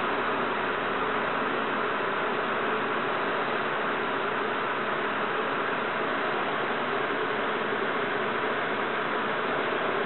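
Steady, even background hiss that does not change in level.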